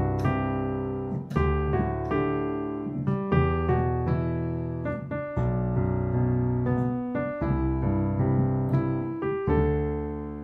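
Piano playing a riff in the right hand over low left-hand notes struck in the same rhythm as the right hand, the low notes coming afresh about every one and a half to two seconds.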